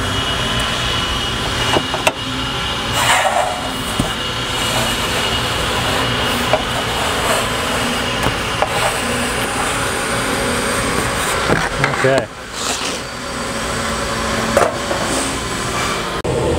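Steady hum of shop ventilation, with a few light taps and scrapes as a formed steel panel is handled and checked against a template on a wooden workbench.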